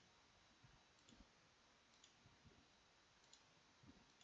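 Near silence with a handful of faint, irregularly spaced computer mouse clicks as menu items are selected.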